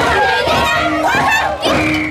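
Several people, mainly women, singing together in high voices in a traditional Andean carnival song.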